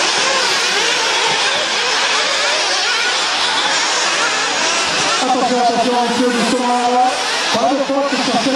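Small nitro engines of 1/8-scale off-road RC buggies buzzing as several race at once, their high whine rising and falling as they rev and back off. Near the end one engine holds a steadier, stronger note.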